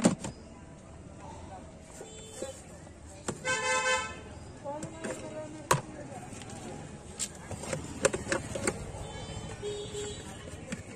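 A vehicle horn honks once, for under a second, about three and a half seconds in, over steady street noise. Sharp clicks and knocks of plastic jars and lids being handled come at the start, near the middle and in a quick cluster near the end.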